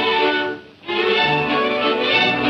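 Orchestral trailer music led by violins. There is a brief break about half a second in, then the strings come back in.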